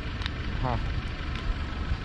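Wind rumbling on the microphone, with a couple of light clicks as a rubber tire is worked back onto a LEGO Technic wheel rim. A faint voice shows just under a second in.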